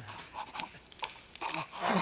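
A man in pain panting in short, ragged breaths, breaking into a louder cry near the end as the crown of thorns is forced down onto his head.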